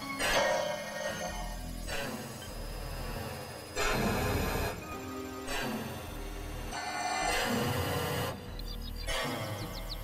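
Experimental electronic synthesizer music: steady tones and drones cut into segments that change abruptly every second or two.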